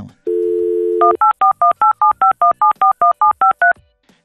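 A telephone dial tone for about a second, then a quick run of touch-tone (DTMF) dialing beeps, about six a second, each beep a pair of tones.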